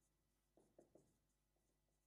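Near silence, with a few faint strokes of a marker writing on a whiteboard about half a second to a second in.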